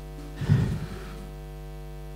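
Steady electrical mains hum from the church sound system, with faint held notes lingering above it in a gap between phrases of keyboard music. A brief low thump comes about half a second in.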